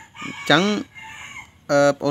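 A single pitched call, about two-thirds of a second long, rising and then falling in pitch, with a faint trailing tone after it.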